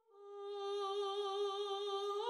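A single long humming note on the score. It swells in over the first half second, then holds steady at one pitch.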